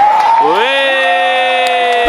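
One person's loud cheering shout that rises in pitch about half a second in and is held for over a second, over the noise of a stadium crowd.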